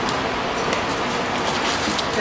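A steady, even rushing noise with no pitch to it, with faint light rustling of cardboard and packaging over it.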